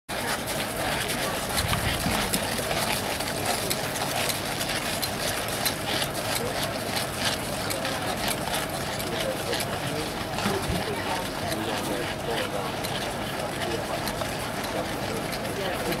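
Murmur of an outdoor crowd of spectators chatting, with many irregular clicks of a troop of horses' hooves on a gravel parade ground.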